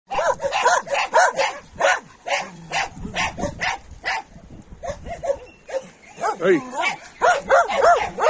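Dogs barking in quick runs of short barks, about three or four a second, with a lull of a couple of seconds in the middle before the barking picks up again and runs thick near the end.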